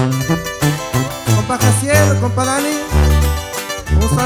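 Instrumental intro of a live corrido: a twelve-string acoustic guitar picking a quick lead melody over a second guitar and a tuba playing separate bass notes.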